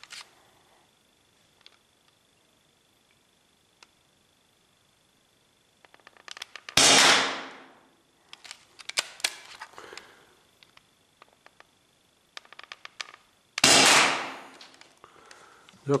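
Two shots from an Umarex T4E HDS68 .68-calibre CO2 paintball marker, about seven seconds apart, each a sharp crack with about a second of echo in a brick-vaulted range tunnel. Light handling clicks come before each shot.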